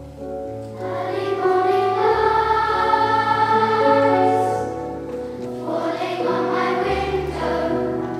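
Children's choir singing together, coming in about a second in over a keyboard accompaniment with long sustained bass notes; the voices ease off briefly around the middle and come back in for the next phrase.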